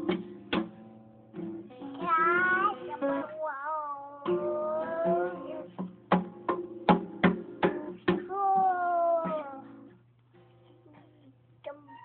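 A toddler plucking and strumming the strings of a toy guitar, each pluck ringing briefly, with a quick run of plucks about six to eight seconds in. In between she sings along in long, wavering high notes. The playing thins out near the end.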